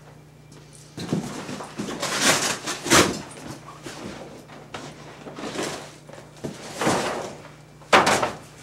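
Black fabric skirt for a Fresnel light being picked up and handled: repeated rustling and swishing of heavy cloth, with a sharp knock about three seconds in.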